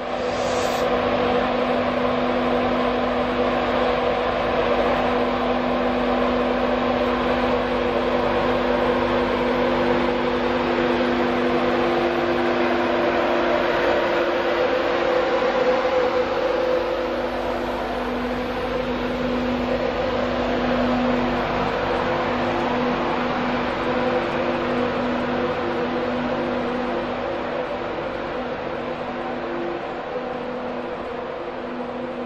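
Class 91 electric locomotive and its train at close range: a steady electric hum of several held tones over a rushing noise, loudest around the middle and easing slightly towards the end.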